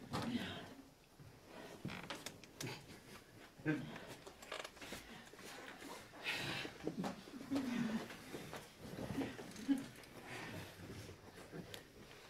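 Faint short voice sounds and scattered knocks and shuffles of actors moving about a small stage, with no steady sound underneath.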